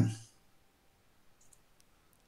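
The end of a spoken word, then near silence broken by two or three faint clicks.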